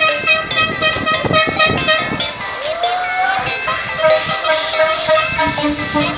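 Background music with a fast, evenly repeating pattern of high pitched notes. About halfway through, the pattern thins and a single tone slides upward before the notes return.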